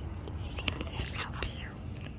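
A person whispering in short phrases, with a sharp click a little under a second in.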